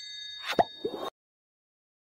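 Sound effects from a subscribe-button animation: a bell-like ding rings out, and two short gliding 'plop' pops come about half a second and a second in. The sound cuts off suddenly just after a second.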